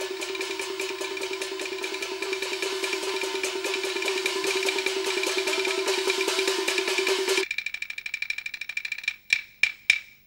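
Peking opera percussion accompaniment to a martial fight: a rapid, unbroken roll of strokes over a held tone. About seven and a half seconds in the held tone stops, and the roll thins out to a few separate strikes near the end.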